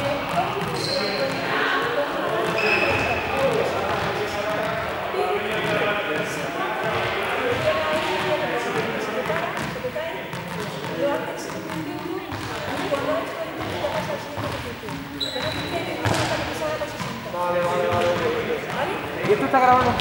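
Several people chatting at once in a large, echoing sports hall, with scattered knocks on the hard floor.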